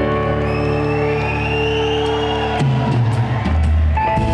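Rock band playing live in an instrumental stretch between sung lines: electric guitar and drums over sustained notes, with a lead line that glides up and back down and the bass stepping lower in the second half.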